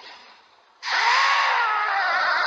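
A harsh, rasping shriek from a giant monster bird, the kochō, breaking in suddenly about a second in, its pitch rising and then slowly falling.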